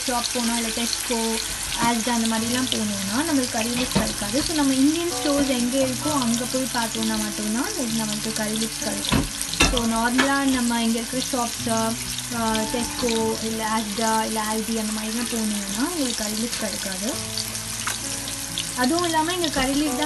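Sea bass and salmon shallow-frying in hot oil in a pan, a steady sizzle. Over it runs a louder wavering melody, like a singing voice, with held low notes beneath.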